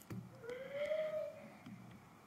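An animal call, about a second long, rising and then gently falling in pitch, with a few faint clicks around it.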